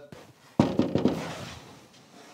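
Knocking on a door: a quick run of knocks starting about half a second in, each one fainter until they die away.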